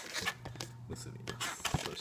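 An inflated latex modelling balloon being bent into a loop by hand, the rubber rubbing against the fingers with scattered small clicks and squeaks.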